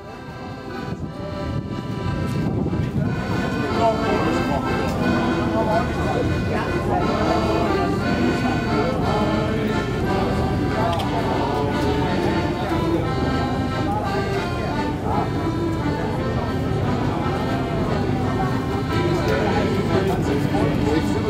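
A shanty choir singing a sea shanty with accordion accompaniment, fading in over the first couple of seconds and then going on steadily.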